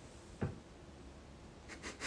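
A hand handling and brushing against the phone or microphone. There is one soft bump about half a second in, then near the end a quick run of scratchy rubs.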